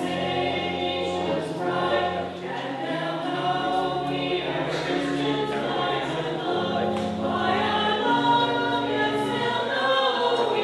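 Church choir singing a hymn in parts over held low accompanying chords that change every second or so.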